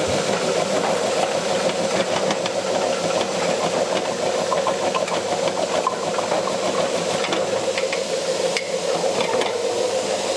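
Electric slicing machine running with a steady motor hum, fresh turmeric rhizomes rattling and clicking against its blade as they are fed in and sliced.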